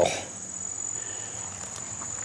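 An insect's steady high-pitched trill, held unbroken, over faint background hiss.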